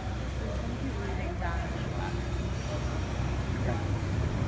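Street ambience: steady low traffic noise with snatches of voices from people nearby.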